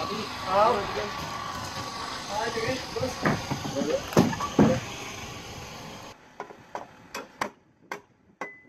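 Indistinct men's voices over busy background noise, with a few hard knocks as the wooden deck slats are pushed into place overhead. About six seconds in, the sound cuts to a quieter space and a run of sharp hammer taps on wood.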